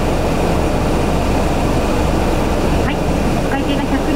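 Steady low rumble of idling and slowly passing cars, with faint voices near the end.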